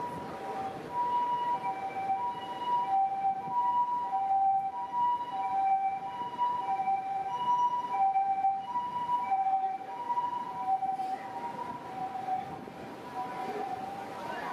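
Ambulance siren sounding the Japanese two-tone hi-lo call, a high and a low note alternating steadily, each held a little over half a second, over street-traffic noise. It grows a little fainter near the end.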